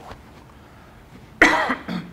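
A person coughing: one loud, sudden cough about one and a half seconds in, followed by a shorter one just after.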